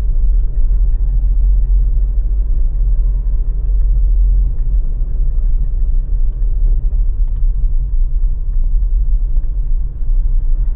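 Steady low rumble of a car driving slowly along a street, heard from inside the cabin: engine and tyre noise.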